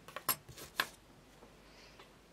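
A quick run of light clicks and taps from small metal fly-tying tools being handled, the scissors among them, with two louder clicks in the first second.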